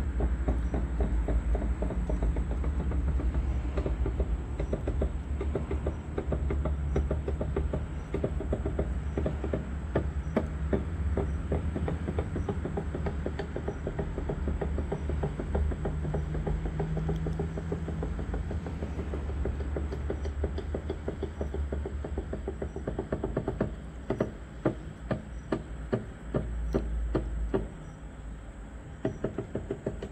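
Small fishing boat's engine running on the water, a steady low rumble with a rapid knocking beat. Near the end the rumble eases and sharper, irregular knocks stand out.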